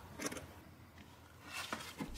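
A few faint, short scrapes of a hand tool's point drawn along leather, tracing around a template.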